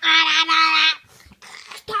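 A loud, high vocal note held for about a second, wavering slightly, then quieter short sounds and a laugh near the end.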